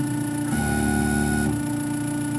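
Tormach PCNC 1100 mill's stepper-driven axis jogging slowly as an edge-finding probe is brought up to the part: a steady whine of several tones, with a deeper tone joining for about a second in the middle.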